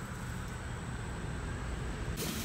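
Steady outdoor background noise, a low rumble with an even hiss and no distinct events.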